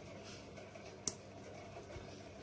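One sharp click about a second in, from a small clothes peg being clipped onto a paper cutout on a string line, over faint room tone.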